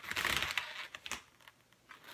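Hands rubbing along inflated latex twisting balloons while one is stretched, a scratchy rubbing that fades out after about a second.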